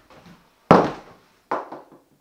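A hard attaché case set down on a kitchen counter: one sharp thump about two-thirds of a second in, then a lighter knock near the end.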